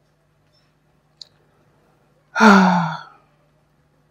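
A woman's heavy, voiced sigh, falling in pitch, about two and a half seconds in. Before it comes a faint click, and a low steady hum sits underneath.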